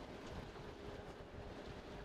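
Faint low outdoor background rumble, with a faint steady hum in the middle.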